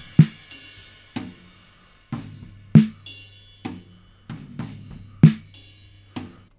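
Drum recording centred on a snare drum, played back dry with no compression: loud snare hits about every two and a half seconds, with quieter drum hits and cymbal wash between them.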